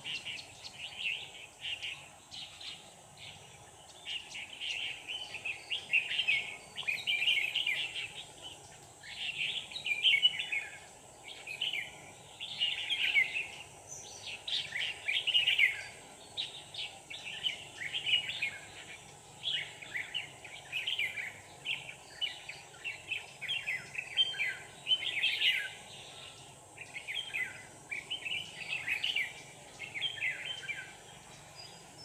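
Red-whiskered bulbuls singing in short, quick warbled phrases, repeated every second or so with brief pauses. It is the challenge singing of a caged decoy bulbul and a wild bulbul drawn to its trap cage.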